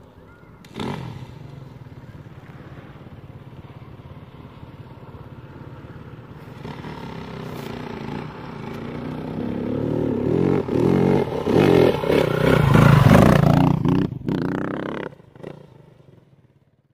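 Dirt bike engine revving as the bike climbs a dirt slope, growing steadily louder as it nears, and loudest a few seconds before the end. Near the end it cuts out abruptly, then fades away.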